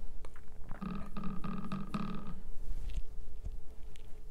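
A short throaty vocal sound from a person about a second in: one low pitched sound broken into four or five quick pulses over about a second and a half.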